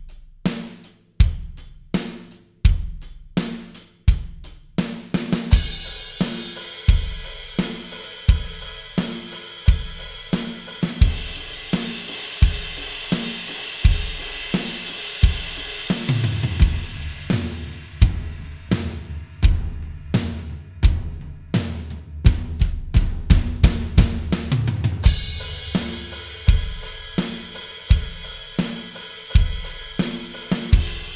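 Drum kit playing a steady beat, kick on one and three and snare on two and four, with the right hand's eighth notes moving between kit voices. It opens with sparse, clear hits, then a bright cymbal wash rings under the beat. Past the middle the floor tom carries the eighth notes with a deep boom, and after quick fills the cymbal wash returns, on the ride, for the last few seconds.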